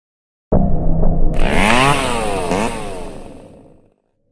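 Chainsaw revving, its pitch rising and falling twice. It starts suddenly and fades away.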